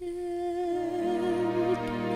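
A soprano voice holds one long note with a steady vibrato over soft orchestral accompaniment, breaking off shortly before the next note.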